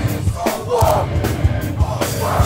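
Hardcore punk band playing live, with drum hits under a loud shouted vocal that comes in about half a second in, after a brief drop in the music. Crowd voices yell along.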